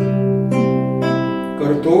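Nylon-string classical guitar picked fingerstyle in a C major arpeggio: a low bass note plucked with the thumb, then single higher notes on the treble strings, all left to ring into one another.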